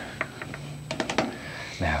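A few light clicks and taps of paintbrushes being handled and picked up from an easel's tray, with a quick cluster of them about a second in.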